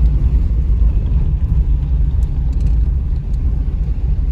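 Steady low rumble of a car's engine and tyres heard from inside the cabin while driving along an unpaved lane, with a few faint clicks in the middle.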